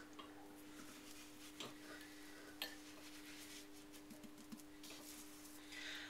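Near silence: a faint steady hum, with a few faint ticks and scratches as gritty wood-ash residue is rubbed by hand into a clay pot.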